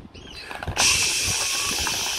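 Toy frying pan's electronic sizzling sound effect: a steady hiss that starts abruptly just under a second in, as if food were frying. Light plastic knocks of toy food and pan come just before it.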